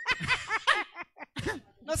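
Laughter, a quick run of short snickering bursts for about the first second, followed by a brief sound and then a word of speech near the end.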